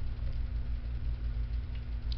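Steady low hum of a box fan's motor running.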